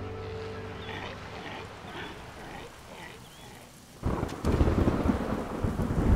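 Music fades out, then about four seconds in a rumble of thunder with rain starts suddenly and keeps going.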